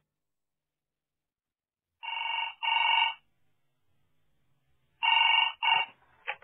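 Telephone ringing in two pairs of short rings, the double-ring pattern of a British phone: one pair about two seconds in and another about five seconds in, each ring a steady pitched tone.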